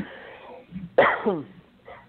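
A person coughing and clearing their throat, with a short voiced sound about a second in.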